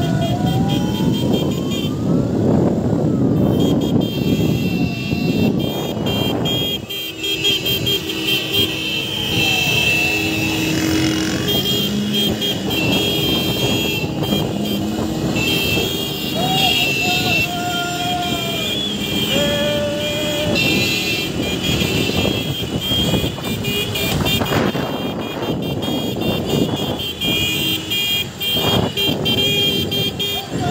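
Celebratory car-horn honking in heavy street traffic: many horns sounding together over engine noise, with shouting voices. A siren-like tone glides down and up several times in the first few seconds, and shorter single horn blasts sound in the middle.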